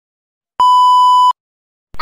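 A single steady electronic beep, a flat high tone held for about three quarters of a second, starting about half a second in.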